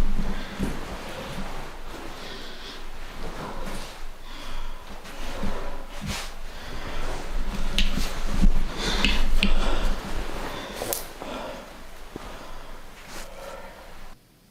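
A person breathing hard while moving about with a handheld camera, with rustling handling noise and a few sharp knocks.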